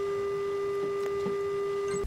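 A single steady tone held at one pitch with faint higher overtones, unchanging, stopping at the end.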